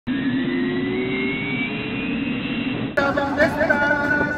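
Intro sound effect: a steady hiss with slowly rising tones, cut off abruptly about three seconds in by street performers' music.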